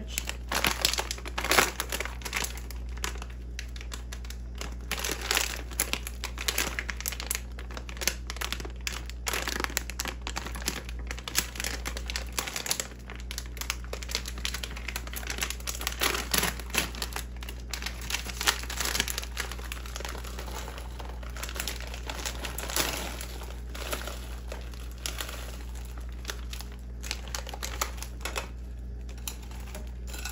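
Plastic bag of frozen mixed vegetables crinkling and rustling in the hands as it is handled and emptied into a frying pan, in irregular crackly bursts.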